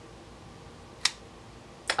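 Two short, sharp clicks about a second apart against quiet room tone, from sticker sheets and supplies being handled.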